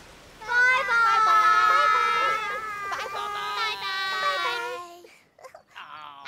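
Several young girls' voices held together in one long high call, lasting about four and a half seconds, with small steps in pitch before trailing off.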